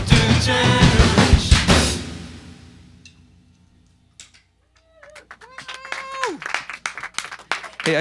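A live indie-folk band ends a song with drums, guitar and voices together. The final chord rings out and fades to near silence about three to four seconds in. Near the end come faint clicks and a couple of short held tones.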